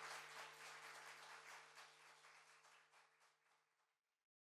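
Audience applauding, fading out to nothing near the end, with a low steady hum beneath.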